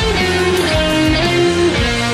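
Electric guitar playing a melodic lead line, sliding between held notes, over a full band recording.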